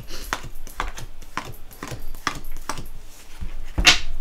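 A tarot deck being shuffled by hand: a run of quick, sharp card flicks and slaps, about three or four a second, with a louder snap near the end.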